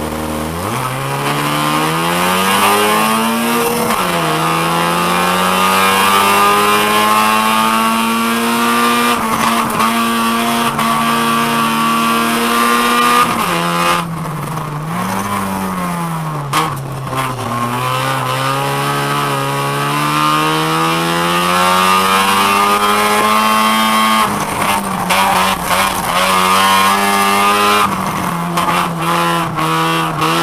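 Race car engine heard from inside the cabin, going from idle to full throttle as the car pulls away from the start and revving up in long rising sweeps, each broken by a sudden drop in pitch as it shifts or lifts. In the middle the revs fall and waver, then climb again, and near the end the sound turns choppy with repeated knocks.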